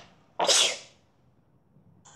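A person sneezing once, a short sharp burst about half a second in.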